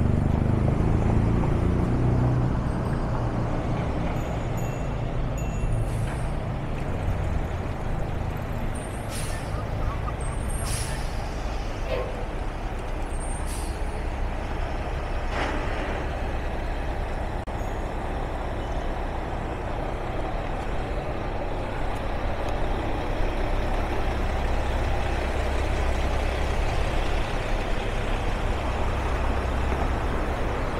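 Road traffic on a busy city street: vehicles passing steadily, with a louder low engine rumble in the first few seconds and a few short high-pitched squeaks or hisses near the middle.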